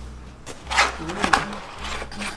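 Cardboard takeaway box being handled and its lid opened: a couple of short, sharp rustling scrapes of paperboard about a second in.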